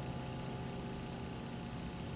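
The faint tail of a held electric-keyboard chord dying away over low hiss, in a lull between sung phrases.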